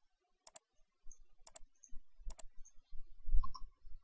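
Computer mouse clicking while edges are picked and a fillet is confirmed in CAD software: a handful of short, sharp clicks, some in quick pairs, with faint low thumps beneath.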